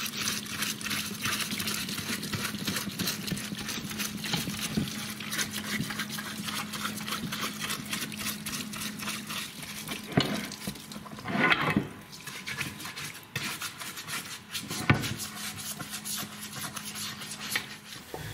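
A hot parts washer runs, with cleaning fluid splashing and spattering steadily as a transmission case is scrubbed in it. A steady low hum runs underneath; it drops out for a few seconds past the middle, and there are a few louder splashes along the way.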